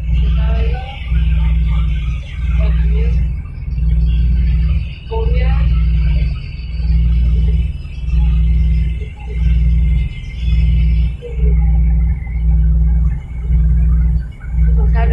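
Passenger ferry's engines droning loudly in the cabin, a deep rumble that swells and dips about once a second.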